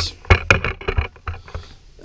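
Rustling and several short knocks and clicks as a paper instruction sheet is handled and lifted, denser in the first second.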